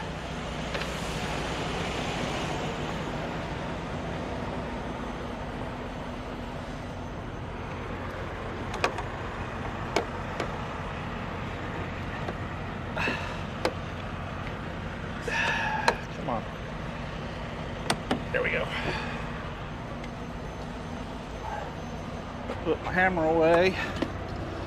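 Sharp, scattered clicks and knocks of a semi truck's side fairing access door and its latch being worked by hand, over a steady low engine hum.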